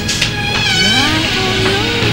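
Creaking door hinge as the door swings open: a squeal with several overtones gliding down and back up in pitch about half a second in, then a shorter lower creak near the end, over steady background music.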